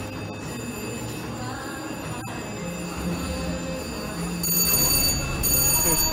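Electronic slot machine tunes and chimes over casino ambience. The VGT slot machine's spin sounds come in louder about two-thirds through as a red spin starts and the reels turn.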